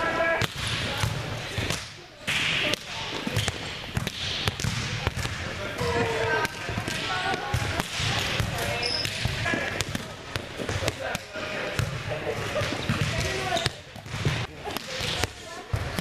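Volleyballs being struck and bouncing on a gym floor, a string of sharp smacks and thuds throughout, over the chatter of several players' voices.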